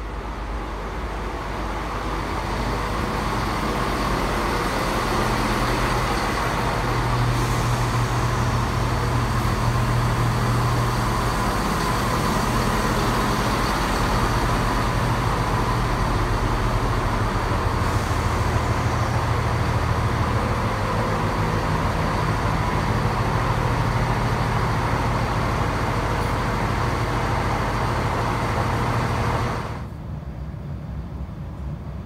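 An East Midlands Railway Class 170 Turbostar diesel multiple unit runs into the platform and stands with its diesel engines running. The sound grows over the first few seconds, and the low engine note steps up and down several times.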